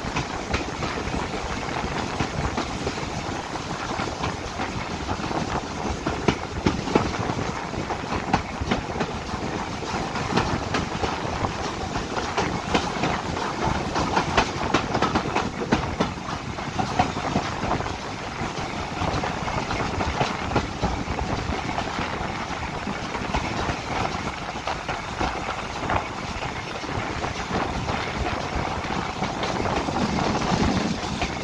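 BR Standard Class 4 4-6-0 steam locomotive 75014 Braveheart and its train running along the line, heard from aboard the train: a steady rumble of wheels on rail with frequent irregular clicks and knocks.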